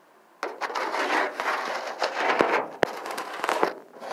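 Pet rats scrabbling through wood-shaving and shredded-paper bedding: a dry, crackling rustle in uneven bursts, starting about half a second in, with two sharp clicks a little past halfway.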